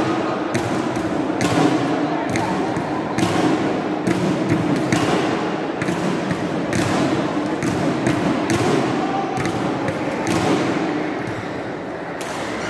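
Badminton rackets striking shuttlecocks in a large, echoing hall: irregular sharp hits and thuds about one or two a second, over a steady murmur of crowd voices.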